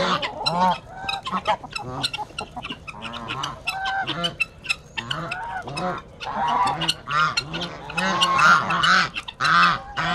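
A flock of domestic geese honking again and again, many calls overlapping, louder towards the end. Sharp clicks are mixed in among the calls.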